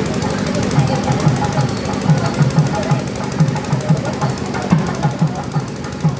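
Music driven by fast, steady drum beats, about four strokes a second.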